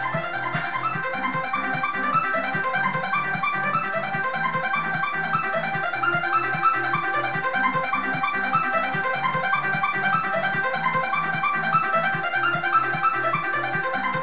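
Casio CTK-7000 electronic keyboard played live in a trance style: fast, evenly repeating arpeggiated synth notes over a steady pulsing bass line.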